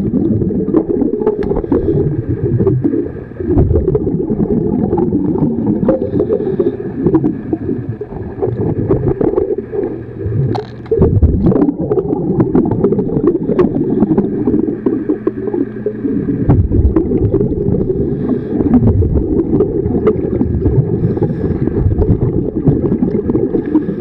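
Underwater sound of a scuba diver's exhaled bubbles rumbling and gurgling past the microphone in surges that ease off now and then, with scattered clicks and scrapes from hull-cleaning work on the propeller shaft.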